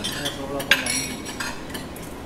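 Spoons clinking against dishes and the rim of a metal rice-cooker pot as rice is scooped and served. There are several sharp clinks: one at the very start, one just under a second in, and one about halfway through.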